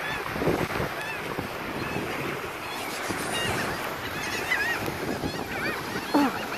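A flock of gulls calling over and over, many short squawks overlapping, over a steady wash of wind and surf.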